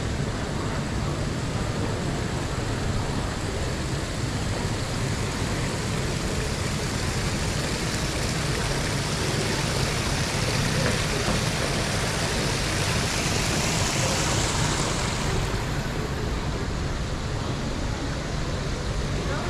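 Steady wash of ambient noise in a large railway station. A high hiss swells from about nine seconds in and fades out about six seconds later.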